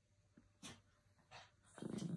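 A small dog vocalising: two short sounds about 0.7 s apart, then a longer, louder, low-pitched sound near the end.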